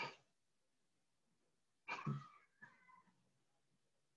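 Near silence, broken about halfway through by one short voice-like call and a fainter one just after it.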